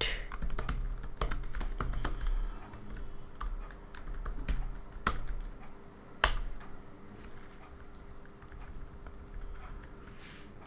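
Typing on a computer keyboard: a quick run of keystrokes for most of the first seven seconds, with two sharper key clicks near the end of that run, then only a few faint taps.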